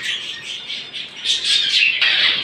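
Several caged pet birds chirping and squawking at once, with overlapping high calls that grow louder about one and a half seconds in.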